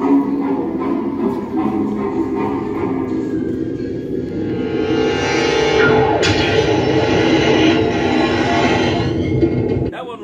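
A triggered Halloween animatronic prop playing its loud soundtrack of music and effects, growing fuller and louder about halfway through.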